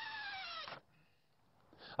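Cordless drill driving a screw into a wooden joist. Its motor whine falls steadily in pitch, then cuts off suddenly under a second in.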